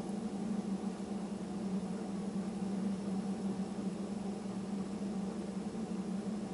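A steady low hum with an even hiss, unchanging throughout: constant room background noise from something running nearby.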